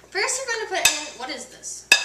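Two sharp clinks of kitchenware about a second apart, with a girl's voice briefly at the start.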